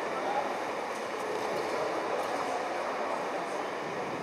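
Steady murmur of many people talking indistinctly, echoing in a large sports hall.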